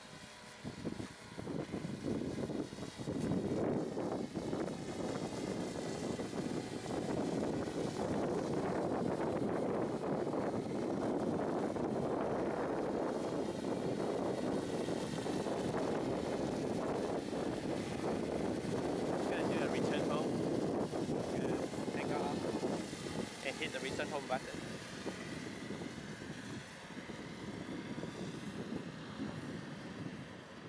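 Wind buffeting an outdoor microphone: a steady rushing noise that thins out toward the end, with a few faint words near the end.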